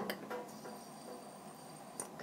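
Faint clicks and clinks of a small metal fidget spinner being handled, against a quiet room with a faint steady high whine.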